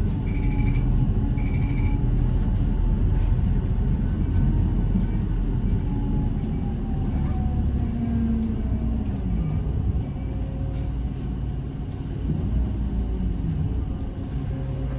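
Bus heard from inside the cabin while driving: a steady low engine and road rumble. Two short high beeps about a second apart sound near the start, and the engine's pitch drops around the middle.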